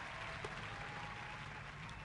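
Faint room tone in a pause between speakers: a low steady hiss, with one small click about half a second in.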